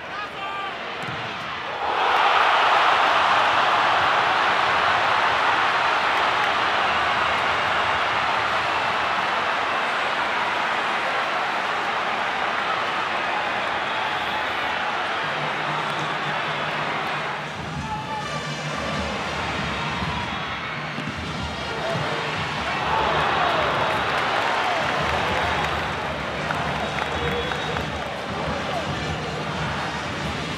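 Stadium football crowd roaring: the noise jumps up suddenly about two seconds in and stays loud, eases off later and then swells again.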